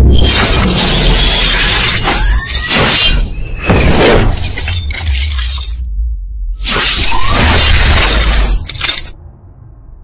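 Sound effects for an animated logo intro: loud swells of noise over a deep bass rumble, with a few short rising glides, cutting out about nine seconds in.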